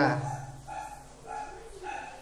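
An animal calling in the background: three short, pitched calls about half a second apart, quieter than the voice.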